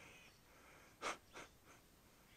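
Near silence broken by two short, faint breaths or sniffs close to the microphone about a second in, the second quieter than the first.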